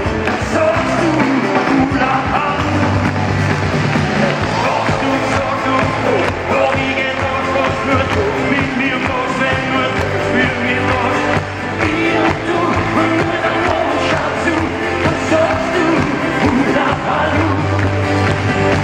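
Live band music with singing: acoustic guitars, drums and an orchestra playing continuously, recorded from among the audience in a large reverberant concert hall.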